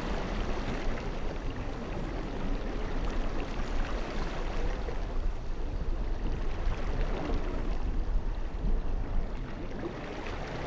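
Small waves washing and lapping onto a sandy shore in a steady, continuous wash of water.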